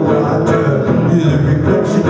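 Guitar played live in a rock song, chords strummed over a steady band-like fullness.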